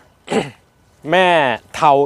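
A man briefly clears his throat, followed by a short pause and then his speech.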